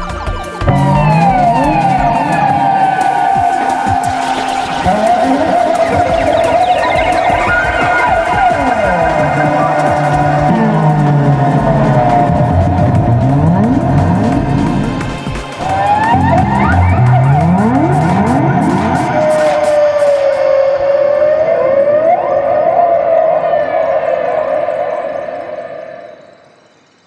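Several overdubbed double bass parts, bowed, playing sliding notes that glide up and down over a held high line and lower bass glides. The music dips briefly midway and fades out near the end.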